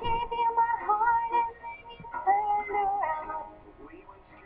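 A female voice singing long held notes with music, in two phrases with a short break about two seconds in.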